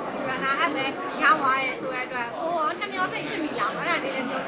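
Speech only: a woman talking in Burmese, with no other sound standing out.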